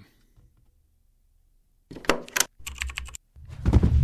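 Logo-intro sound effect: after a near-silent start, two quick runs of computer-keyboard typing clacks, then a louder deep thump near the end that fades away.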